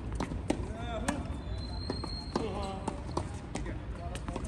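Tennis ball being struck by rackets and bouncing on a hard court during a rally: a string of sharp pops at irregular intervals. Voices of people around the courts come and go.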